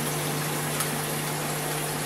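Aquarium internal filter running: a steady low hum from the pump with a constant hiss of water and fine air bubbles jetting from its outlet nozzle.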